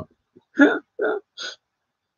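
A man's short laugh in three quick bursts.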